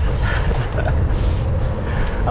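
Steady low rumble of wind buffeting the microphone of a camera riding along on a bicycle, mixed with bicycle tyre noise on tarmac.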